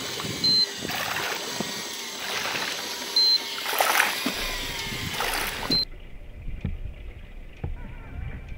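Sea water splashing and sloshing at the surface beside the boat, with three short high beeps about two and a half seconds apart. About six seconds in, the sound cuts abruptly to a duller low rumble.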